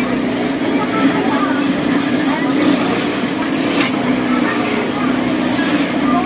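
Busy market crowd noise: scattered voices and chatter over a continuous low hum.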